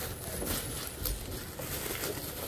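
Faint handling noise from a boxed toy figure being looked over in the hands, a few soft clicks over a low rumble.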